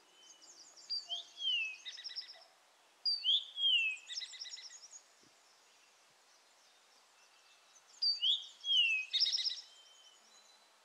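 A songbird singing three similar phrases with pauses between, each a clear downward-slurred note followed by a rapid buzzy trill.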